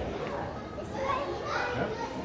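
Children's voices: indistinct chatter and calls of young children at play.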